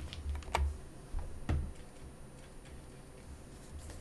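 A few light taps and clicks in the first second and a half, then quieter, over low handling thumps: hands and fingers touching and shifting a spiral-bound paper planner.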